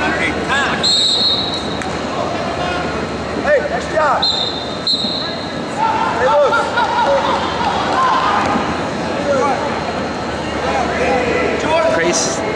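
Spectators and coaches shouting in an arena during a wrestling bout. Two short, high whistle blasts, about a second in and again at about four seconds, as the referee stops the action.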